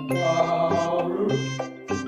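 Light background music with a sustained, wavering voice-like sound laid over it for about the first second and a half.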